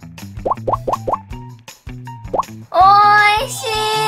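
Cartoon sound effects over background music with a steady beat: four quick rising bloops about half a second in, a single bloop a little later, then a long held note starting near the end.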